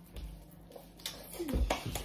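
Quiet kitchen room tone, then a few soft slaps and knocks in the second half as raw minced meat is patted into a patty between the hands.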